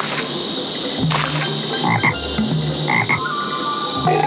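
Green tree frog croaking several times in a row, over a steady high-pitched tone.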